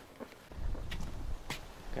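Low wind rumble on the microphone starting about half a second in, with two faint sharp clicks of footsteps, one about a second in and one about a second and a half in.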